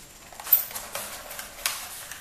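Handling noise from a Cyma CM.030 airsoft pistol being worked loose from the insert tray of its box. A sharp click comes about half a second in and another a little after one and a half seconds, with light rustling and scraping between.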